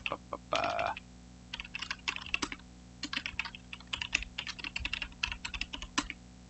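Typing on a computer keyboard: quick runs of keystrokes in bursts, starting about a second and a half in.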